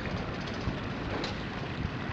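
Wind buffeting the microphone outdoors, a steady rushing noise with a fluctuating low rumble.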